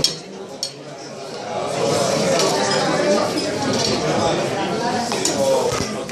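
China plates and a metal serving spoon clinking and clattering as food is served, with two sharp clinks at the start, over a murmur of restaurant chatter.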